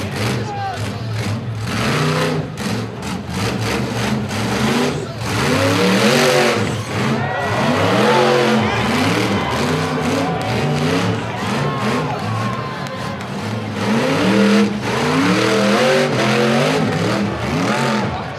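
A rock bouncer buggy's engine revving hard in repeated rising-and-falling bursts as it climbs a rock face, with spectators' voices shouting over it.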